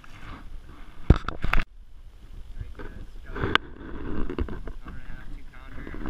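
Two loud, sharp knocks about a second in, then indistinct talking with a single sharp click in the middle.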